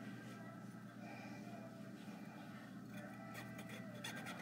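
Quiet room tone: a faint, steady hum with no distinct events.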